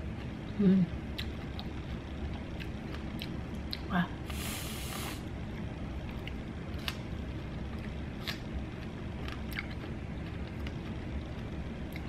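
Aerosol whipped-cream can spraying onto a strawberry: one hiss of about a second, a little after four seconds in. Around it, small clicks of eating over a low steady hum.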